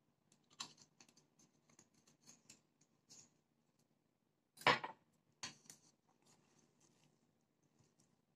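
Spatula stirring and scraping sticky glutinous-rice dough in a stainless steel bowl: soft scrapes and a run of small clicks, with one louder knock about halfway through and a smaller one just after.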